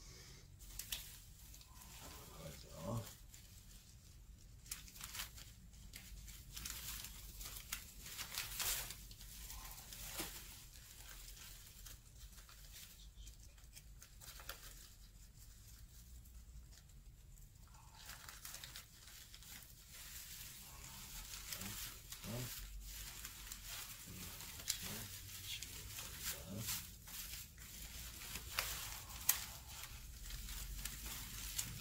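Cut white paper strips rustling and crinkling in irregular bursts as they are wound by hand around a paper pole, with a quieter stretch a little past the middle.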